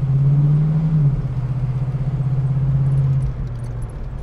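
1975 AMC Hornet's 304 V8 running under way, heard from inside the cabin as a steady low hum with road noise; the note dips slightly about a second in and drops off near the end. Light rattles and squeaks from the old car's body and interior come through with it.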